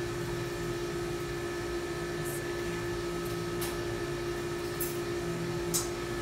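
Steady equipment hum with one constant low tone, and a few faint, sharp ticks spread through it as the AMSCO Eagle autoclave's manual door handwheel is turned to lock the door.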